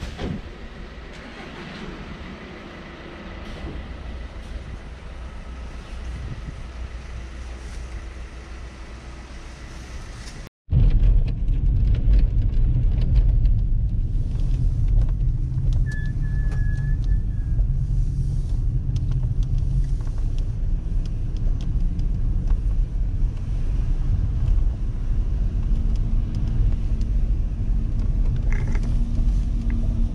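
A car driving, heard from inside the cabin as a steady low rumble of engine and road noise. Before it, a quieter stretch of outdoor background sound ends in a brief cut about a third of the way in.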